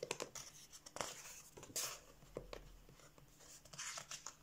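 Pages of a colouring book being turned by hand: a few soft paper rustles and flicks, the loudest a little under two seconds in.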